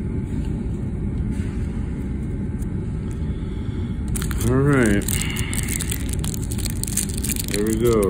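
Crinkling and tearing of a foil baseball-card pack wrapper, starting about halfway through, over a steady low rumble, with a short muttered voice sound.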